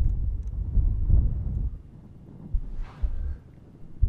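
Wind buffeting the microphone in uneven gusts, a low rumble that eases off about halfway through, with a short soft hiss near the end.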